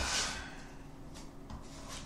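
Hands rubbing and sliding over a cardboard shipping box as it is handled, loudest at the start, followed by a few faint scratches.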